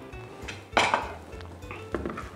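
A metal spoon knocking against a dish or pan while food is spooned out: one sharp clink a little under a second in and a lighter click near the end.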